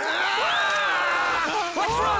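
A cartoon voice's high-pitched wordless cry: one long call sliding in pitch, then shorter wavering cries near the end.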